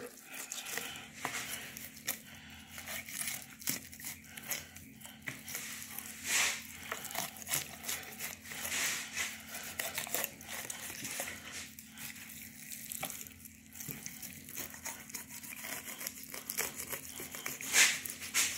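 Fillet knife cutting through the flesh of a large blue catfish as the fillet is peeled back off the ribs: irregular crackly cutting and tearing strokes, over a steady low hum.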